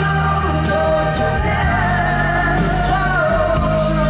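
Live pop-rock ballad played loud through a concert PA: two male singers hold long sung notes over a full band, and the melody steps down about three seconds in.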